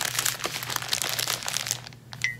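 A stack of plastic phone-case packaging pouches crinkling loudly as it is handled and fanned out. It is a dense, irregular crackle that thins out near the end.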